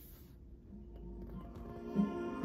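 Music playing faintly from the aux input of a Sansui 3900Z stereo receiver through its speakers, coming up in level from about half a second in. A short knock near the end.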